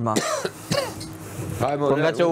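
A person clears their throat with a short rasp and brief voiced sounds, then talking resumes near the end.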